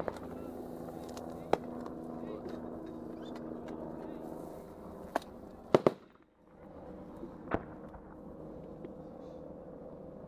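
A few sharp gunshot cracks, the loudest a close pair about six seconds in, over a steady humming drone that fades after the first few seconds.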